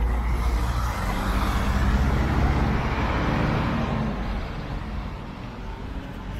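City bus driving past: engine rumble and road noise, loudest over the first few seconds, then fading away.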